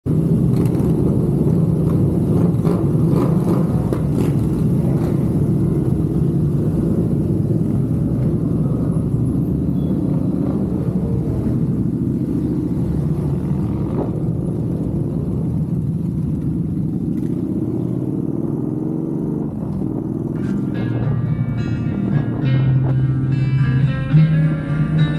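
Yamaha Bolt V-twin motorcycle engines running at low revs as a group of bikes rides off one after another, with a steady low rumble. Guitar music comes in near the end.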